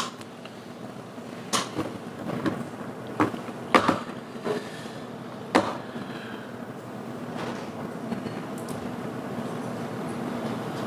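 Courtroom room tone, a steady low hum, broken by about four short knocks and clicks of handling noise, the loudest about four seconds in.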